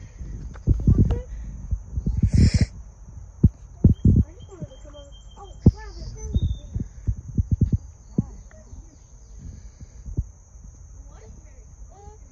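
Wordless children's voices and low handling thumps as rocks are turned over in shallow river water, with one loud splash-like burst about two and a half seconds in. A steady high-pitched whine runs underneath.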